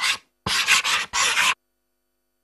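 Scratchy paintbrush strokes rasping across a surface, a sound effect of three quick swipes. The last one cuts off abruptly about a second and a half in.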